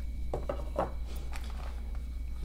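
Faint handling noises of unboxing: a few soft rustles and light taps as hands work a paper card and plastic-wrapped lens pouches in a small box, over a steady low hum.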